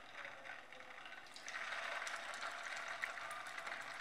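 Green pea and semolina tikkis shallow-frying in hot oil in a frying pan, a faint sizzle. The sizzle grows louder about a second and a half in, as a second tikki goes into the oil.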